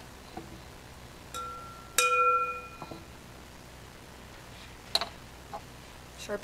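Metal singing bowl struck, a soft tap and then a firm strike about two seconds in, ringing with several steady tones for about a second as it fades. A sharp click comes near the end.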